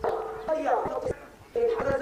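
A voice holding drawn-out tones, with a short break a little past the middle.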